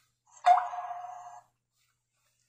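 A single electronic beep from the pairing setup: it starts abruptly with a steady mid-pitched tone and a rising sweep, then fades out over about a second.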